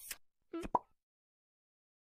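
Cartoon-style plop sound effect: two quick pitched pops about half a second in, the second sharper and louder.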